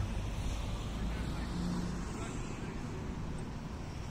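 Steady low rumble of road traffic outdoors, with no distinct events standing out.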